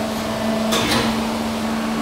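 Hydraulic forging press running: a steady hum with an even hiss, and a short burst of noise just under a second in.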